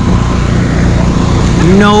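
Steady low motor drone running without change, the kind of continuous hum given off by a generator or blower running nearby.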